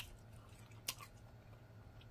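Quiet chewing with two faint sharp clicks, one right at the start and one about a second in.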